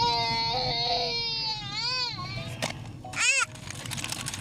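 Toddler crying in a car seat inside a moving car: one long held wail, then two shorter rising-and-falling cries, over the low hum of the car.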